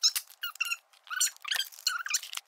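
Sped-up, fast-forwarded speech: a voice turned into rapid, high-pitched squeaky chirps, several short bursts a second.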